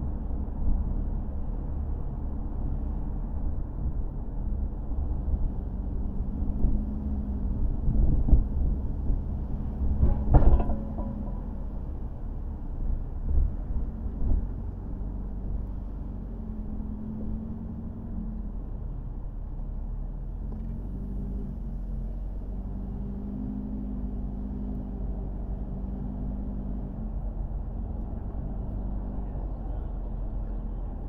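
Car driving on a city street: steady low rumble of road and engine, with a single sharp knock about ten seconds in.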